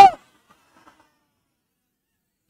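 A man's spoken word ends just after the start, then near silence: a pause in the lecture speech.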